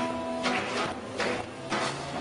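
Jazz combo playing an instrumental passage, with upright bass and piano chords under a crisp percussion hit on each beat, about every two-thirds of a second.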